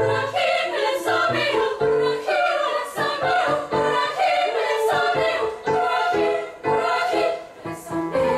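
Girls' choir singing a song in parts, the notes moving every fraction of a second with short hissing consonants.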